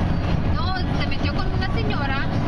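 Steady road and engine rumble inside a vehicle's cabin while driving at highway speed, with people talking over it.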